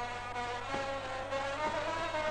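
Brass band music: trumpets holding long notes that step from one pitch to the next, over a faint steady low hum.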